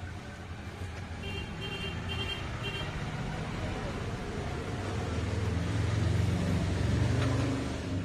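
A steady low engine hum that swells louder past the middle and eases off near the end, with a few short, faint high beeps in the first few seconds.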